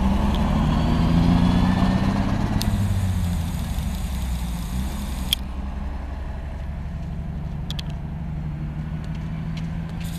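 City bus's diesel engine pulling away from a stop. Its pitch rises and falls over the first few seconds as it accelerates, then it runs steadily and slowly fades as the bus drives off.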